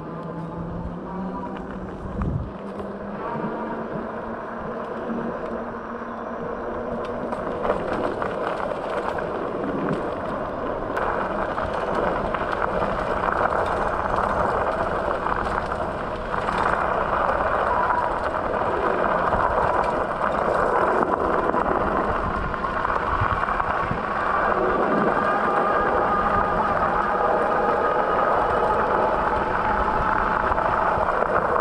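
Bakcou Grizzly electric scooter underway: its fat tyres rolling over pavement and then loose gravel, with a thin motor whine that wavers in pitch. The rolling noise grows louder about ten seconds in.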